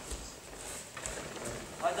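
Faint, soft thuds of judo fighters' bare feet stepping and shuffling on the tatami mats as they grip and move, with a coach's shout of "weiter" right at the end.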